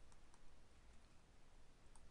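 Near silence: room tone with a few faint clicks from a stylus on a drawing tablet as handwriting is written.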